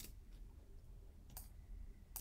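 Two faint, sharp clicks from a computer being worked at a desk, one at the start and one about one and a half seconds in, over a low steady hum; otherwise near silence.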